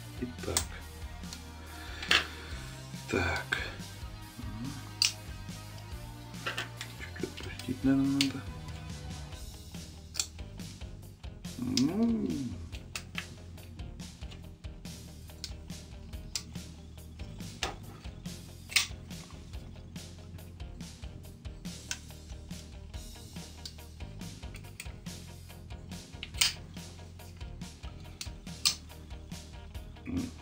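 Background music with a steady bass line, over scattered sharp clicks and taps from a folding knife and a small screwdriver being handled.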